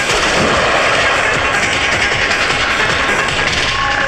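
Film soundtrack: dramatic background music over a loud, continuous rushing noise.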